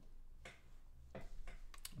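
Quiet room tone with a couple of soft breath-like sounds, then a quick cluster of faint, sharp clicks near the end.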